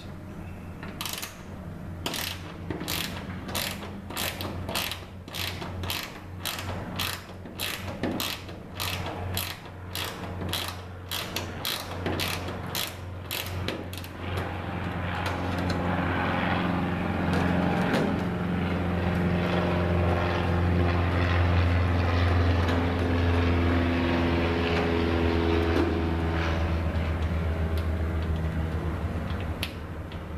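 Ratcheting wrench clicking about twice a second as it backs a nut off an aircraft wing attachment bolt, stopping about halfway through. A low steady drone then builds and fades near the end.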